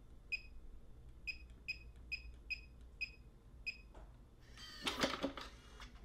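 Lockly smart safe PIN Genie keypad giving about seven short high beeps, one per key press, roughly half a second apart. Near the end comes a longer burst of mechanical noise as the safe unlocks and its lid swings open.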